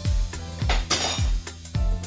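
Background music with a steady kick-drum beat, about two beats a second, over a held bass. A short, bright, clinking crash cuts through a little under a second in.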